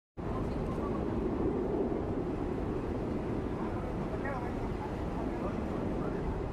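Steady outdoor street noise with a low rumble, with faint distant voices about four seconds in.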